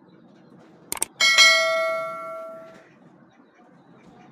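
Two quick mouse clicks, then a bright notification bell ding that rings on and fades away over about a second and a half: a subscribe-button animation sound effect.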